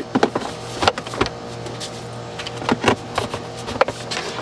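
Hard plastic clicks and knocks as a booster seat's plastic armrests are handled and pushed into their slots in the seat base, several short sharp taps scattered over a few seconds.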